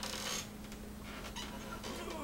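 A house cat meowing, a short bending call that starts near the end, after a brief rustling noise at the start.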